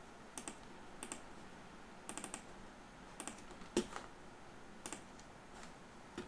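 Faint, scattered clicks of a computer keyboard and mouse, a few every second or so, the sharpest a little before four seconds in.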